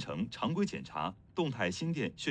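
Speech only: a voice narrating, with no other sound standing out.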